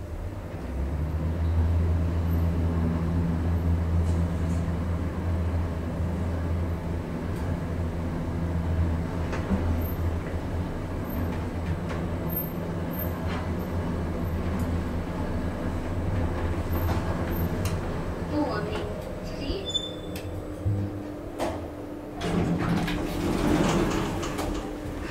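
Schindler 3300 MRL traction elevator travelling, heard from inside the cab: a steady low hum sets in about a second in as the car starts moving and runs on through the ride. It settles and stops near the end, followed by clicks and the car doors sliding open.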